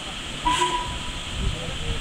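Steam hissing steadily from an LMS Stanier Black 5 steam locomotive, over a low rumble.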